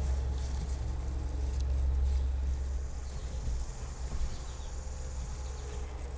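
Steady low background rumble that fades about halfway through, with a faint high-pitched whine in the middle seconds.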